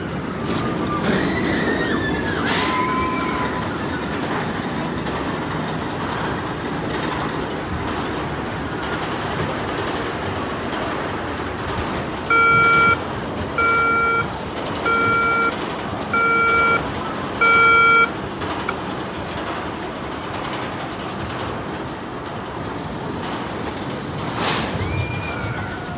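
Five loud beeps from a backup alarm, evenly spaced about a second apart, over the steady rumble of a steel roller coaster train running on its track. Riders' screams rise and fall in the first few seconds.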